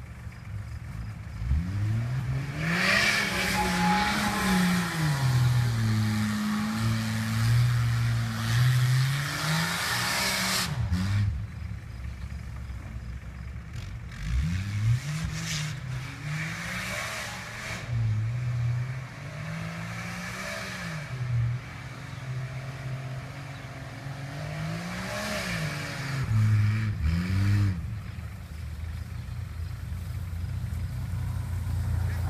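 A Jeep Grand Cherokee's engine revving up and dropping back again and again as it spins doughnuts on a grass field. The revs climb hard in several rounds, with a rushing noise over the loudest stretches.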